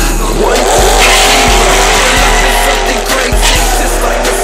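Drag-racing car launching off the start line, its engine revving up from about half a second in and running hard down the strip, mixed with music carrying a heavy bass beat.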